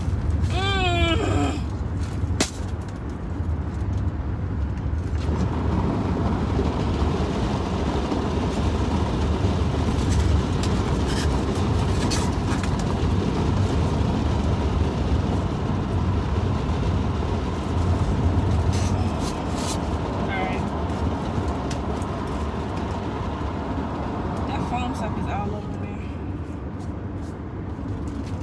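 Road and engine noise inside a moving car's cabin: a steady low rumble, with the tyre and road hiss growing louder about five seconds in. A short voiced sound comes right at the start.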